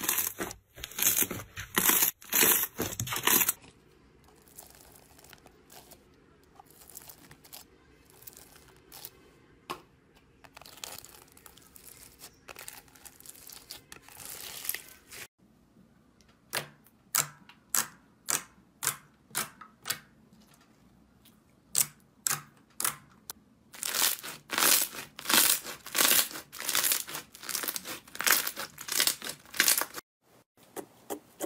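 Slime being squeezed and pressed by hand: loud crackling squishes for the first few seconds, a quieter stretch, then a long run of sharp popping clicks, about two a second, as clear slime is pressed flat.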